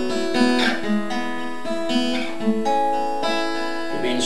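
Acoustic guitar in standard tuning playing chord shapes in E on the inner strings while the top two strings ring open, giving an open-tuning feel. The notes ring on between changes, with a couple of quick strums about half a second and two seconds in.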